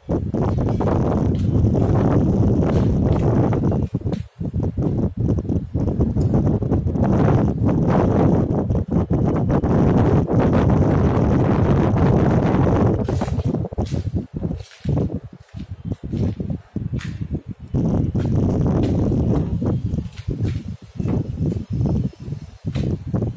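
Loud, low rumbling noise on the microphone, almost unbroken at first and breaking up with short gaps in the second half.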